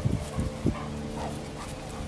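Basset hound making about three short, low woofs in the first second, then a faint whimper.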